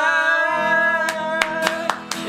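A man's voice sings one long held note over acoustic guitar, which comes in about half a second in. Hand claps join about a second in, about four a second.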